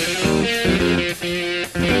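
Rock song with a riff of electric guitar chords over bass guitar; a sung vocal comes in right at the end.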